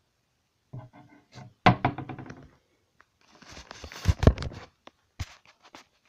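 Close-up thumps and knocks with rustling, from the camera being handled and swung about: a sharp knock about a second and a half in, a cluster of heavier thumps around four seconds, then a few light clicks.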